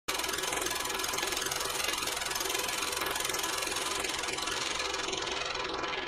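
A steady rushing noise from an intro sound effect, starting abruptly; its hiss begins to dull near the end as the highs are filtered away.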